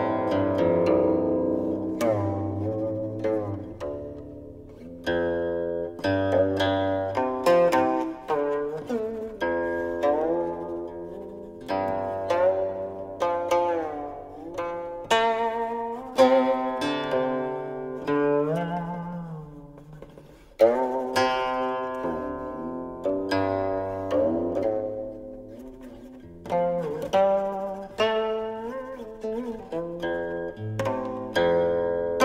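Guqin, the seven-string Chinese zither, played solo: plucked notes that ring and fade, many of them sliding up or down in pitch while they sound. One sharp, loud pluck comes about two-thirds of the way through.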